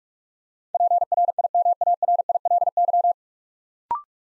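Morse code at 45 words per minute: a single steady tone keyed in rapid dits and dahs for about two and a half seconds, sending the whole word PRIMARILY. Near the end comes one brief two-note rising beep, the courtesy tone that marks the word as complete.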